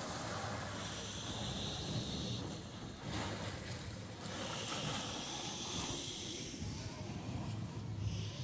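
Sea surf rushing in and out of the narrow rocky channel of a coastal blowhole, with two surges of spray about a second and four and a half seconds in. Wind rumbles on the microphone throughout.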